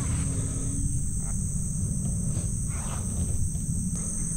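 Insects droning steadily in two high, unchanging tones, over a continuous low rumble on the microphone and a few soft swishes of footsteps brushing through grass.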